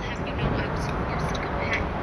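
Muffled, garbled voices from a bugged room heard through a wiretap, buried in a steady hiss of noise.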